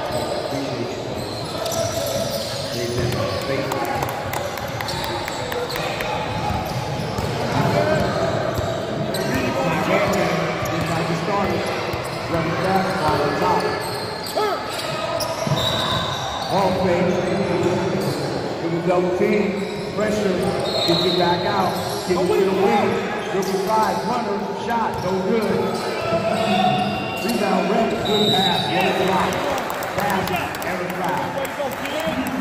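Basketball game on a hardwood court in a large gym: the ball bouncing, with indistinct voices of players and spectators throughout.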